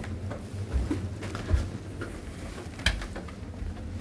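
Soft footsteps going down wooden stairs: a few irregular thuds over a low steady hum.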